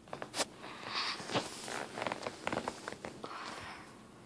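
Handling noise: rustling and a string of sharp clicks and knocks as the camera is moved.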